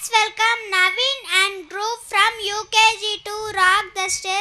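A young boy's voice through a stage microphone and loudspeakers, delivering words in a level sing-song chant, syllable after syllable.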